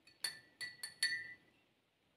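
Metal spoon clinking against the inside of a glass mug while stirring molasses into warm water to dissolve it: four quick clinks, each with a short bright ring, stopping about a second and a half in.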